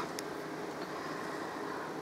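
Faint, steady background hiss of room noise, with one small click shortly after the start.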